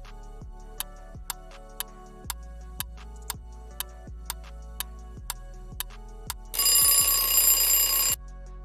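Quiz countdown timer sound effect ticking about twice a second over soft background music. The ticks then give way to a loud alarm-clock ring lasting about a second and a half near the end, signalling that time is up.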